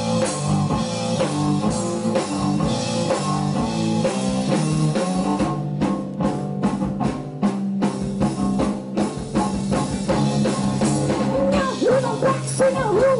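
Live rock band playing an instrumental passage: bowed cello holding low sustained notes over a drum kit, with a run of drum strokes in the middle. A wavering voice comes back in near the end.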